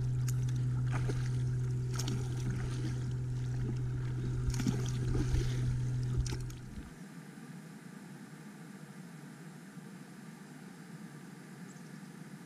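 Kayak paddling: the paddle blades dip and splash with small knocks and drips over a steady low hum. About seven seconds in this gives way to a much quieter, even faint hiss.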